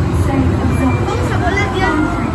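Low, steady rumble of an indoor dark-ride vehicle as the ride gets under way, with scattered voices of riders over it.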